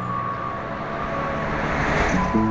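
A vehicle approaching along a road, its road and engine noise swelling as it draws near.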